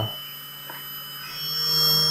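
Small brushless (BLDC) model-airplane motor running on its repaired three-phase driver board: a steady low hum with thin high-pitched electronic whine, growing louder in the second half. It now runs steadily instead of stuttering.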